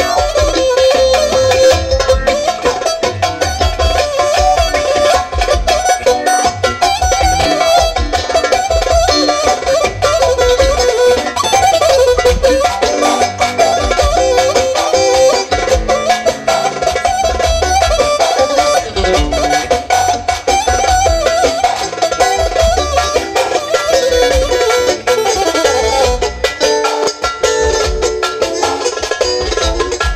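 Amplified live band music through PA speakers: an instrumental with a busy, wavering keyboard melody over electric bass guitar and a steady, pulsing bass beat.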